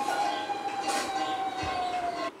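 A single steady, whistle-like tone held through the pause, sagging slightly lower in pitch, over a faint background hiss.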